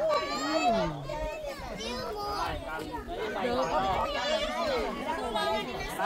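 Indistinct chatter of several people talking over one another, children's voices among them.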